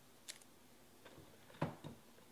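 A few faint clicks and taps from trading cards and plastic card holders being handled, the loudest about one and a half seconds in.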